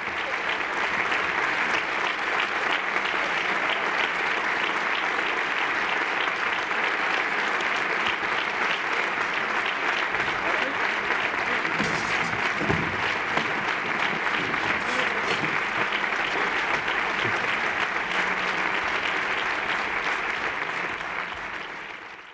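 A theatre audience applauding a curtain call: dense, steady clapping that tails off at the very end.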